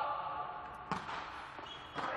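A volleyball struck once, a single sharp smack about a second in.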